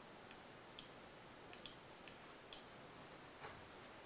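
Near silence with about seven faint, irregular clicks from a laptop being operated by hand.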